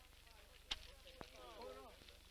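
Faint voices with a steady low hum. A single sharp knock comes less than a second in, and a lighter tick follows about half a second later.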